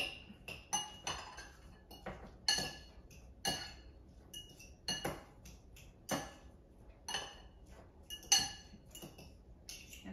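A metal fork clinking against a small glass bowl while mashing avocado and hard-boiled egg together. The sharp, ringing clinks come irregularly, roughly once or twice a second, with one louder strike near the end.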